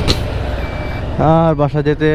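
TVS Stryker 125cc single-cylinder motorcycle running at road speed, its engine and wind noise a steady low rumble on the camera microphone, with a sharp click right at the start. A man starts talking about a second in.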